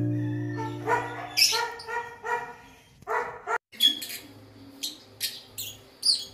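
Guitar music dies away. A run of short, repeated pitched yelping calls follows, then after a brief cut-out, sharper high chirps.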